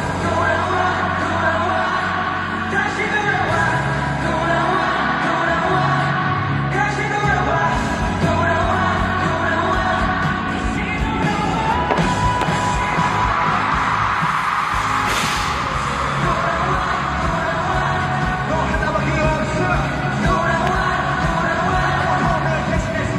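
Live K-pop concert music: a male singer sings into a handheld microphone over a pop backing track. About two-thirds of the way through, a hissing swell builds to a sharp hit.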